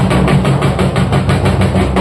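Several large dhol drums beaten together in a fast, even roll of about ten strokes a second.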